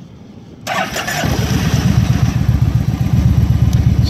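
2009 Kawasaki Vulcan 1700 Classic LT's V-twin engine, on aftermarket pipes, being started in neutral: the starter cranks briefly just after half a second in, the engine catches about a second in and settles into a low, pulsing idle.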